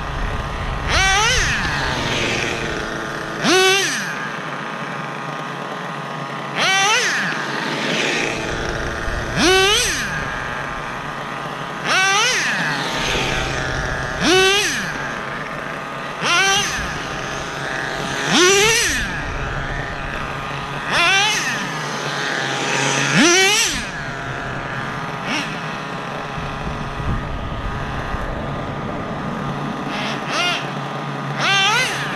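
Traxxas Nitro Revo RC monster truck's small two-stroke nitro glow engine revving in repeated bursts, each a sharp rising whine, about every two to three seconds, with a steady buzzing between bursts.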